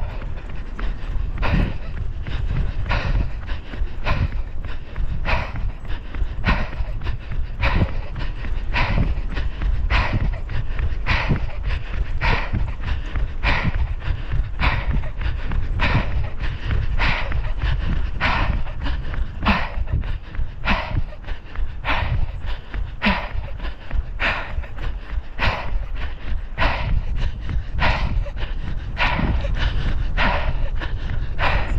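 A runner's heavy, rhythmic panting close to the microphone, about one breath every three-quarters of a second, the hard breathing of a flat-out 200 m sprint. A low rumble of wind on the microphone runs beneath it.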